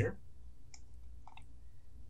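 A few short computer mouse clicks, one about three quarters of a second in and a close pair about a second and a half in, over a low steady hum.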